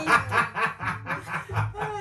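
People laughing: a fast run of short laughs, about four or five a second.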